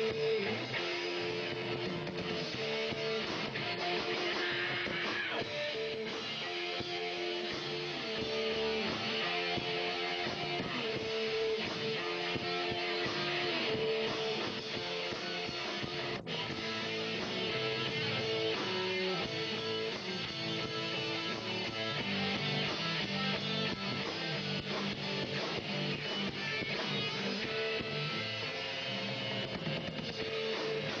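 Rock band playing live, an instrumental passage carried by guitar, with a momentary dropout in the sound about halfway through.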